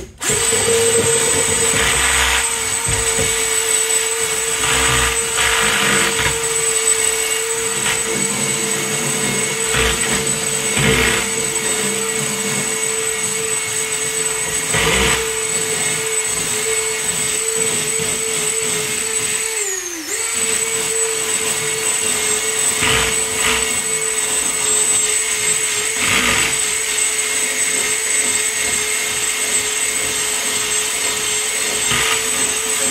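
Cordless drill spinning a wire brush against the rusty steel floor of a school bus: a steady high motor whine with scratchy grinding that swells each time the brush is pressed into the rust. About 20 seconds in, the motor slows and stops briefly, then runs again.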